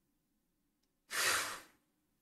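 A woman's single heavy sigh, a breathy exhale of about half a second that starts sharply and fades out, just past the middle.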